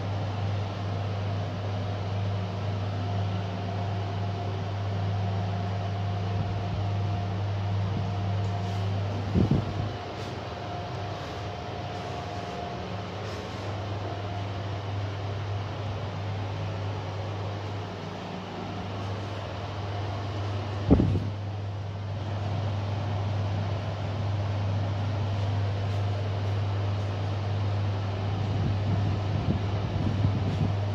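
KONE MiniSpace traction elevator car riding with a steady low hum and, for the first part, a faint high whine. Two brief thumps come through, the louder one about two-thirds of the way in.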